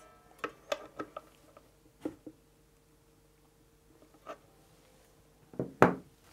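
Screwdriver turning the truss rod adjustment nut at the heel of a vintage-style Fender guitar neck: a few faint, scattered metal clicks and taps. Near the end come a couple of louder handling knocks.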